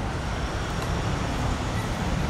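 Steady low rumble of background road traffic.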